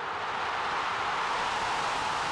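Stadium crowd roaring as a goal is scored, a steady roar that swells a little about a second in.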